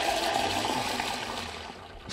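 Water running from an outdoor brass tap into an enamel mug, a steady splashing rush that gradually fades toward the end.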